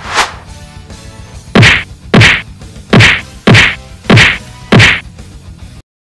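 A run of loud punch-like whacks, fight sound effects: one just after the start, then six in a row, nearly two a second. The run cuts off suddenly near the end.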